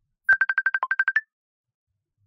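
Telephone ringtone on a dropped call line: a quick run of about a dozen short, high beeps in under a second, with one lower beep in the middle and a slightly higher final beep.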